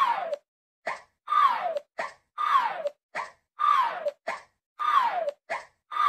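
Cartoon pop sound effects, five in a row about a second apart. Each is a quick click followed by a short tone that glides down in pitch.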